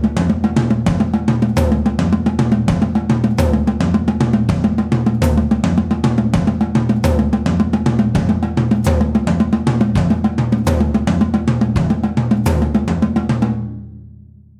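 A drum kit playing a busy groove of snare, cymbal and bass drum strikes over a sustained low bass line. It stops near the end, leaving the low notes fading out.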